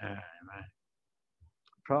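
A man's voice trails off, then a stretch of dead silence broken only by a couple of faint short clicks, before his voice starts again near the end.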